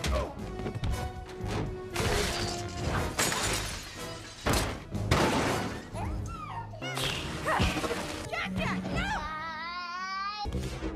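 Animated action-film soundtrack: dramatic score under repeated crashes and shattering impacts, with short vocal cries and a wavering pitched sound near the end.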